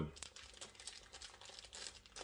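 Faint crinkling and rustling of packaging being torn into and opened by hand: a quick run of small crackles.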